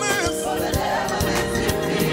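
Live gospel praise music: a group of singers in harmony, backed by keyboard and a drum kit.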